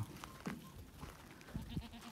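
A goat bleating faintly and briefly, about half a second in.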